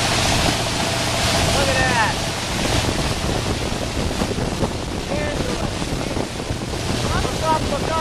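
Ski boat running steadily at towing speed with a low engine hum, water rushing and spraying along the hull and wake, and heavy wind on the microphone.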